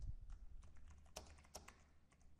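Faint typing on a computer keyboard: irregular key clicks, a few strokes spread through the moment, with a dull low bump right at the start.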